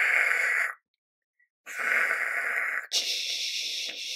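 A man making rocket-launch whooshing noises with his mouth. There are two breathy hisses of about a second each, then a thinner, higher hiss near the end.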